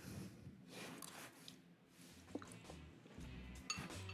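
Very faint sounds of a person eating a spoonful of baked white beans in tomato sauce: quiet chewing, with a small click or two, like a spoon touching the bowl.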